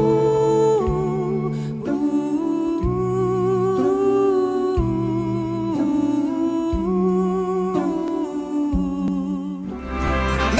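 Slow vocal music: a lead voice sings long notes with vibrato over held chords from a vocal group, with the chords changing about once a second.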